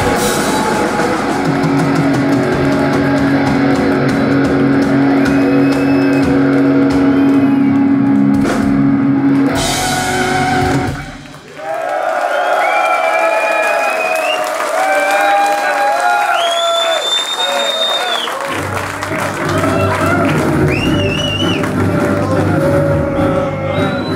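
Death metal band playing live with distorted guitars, bass and drums, holding a final chord for several seconds before the song cuts off about eleven seconds in. After the cut come high held tones that slide up and down, and the low end returns a few seconds before the end.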